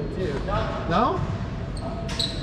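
A voice calling out without clear words, its pitch sliding up and down for about half a second near the middle, echoing in an enclosed racquetball court.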